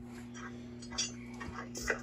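Steady low hum with two faint clicks, one about a second in and one near the end.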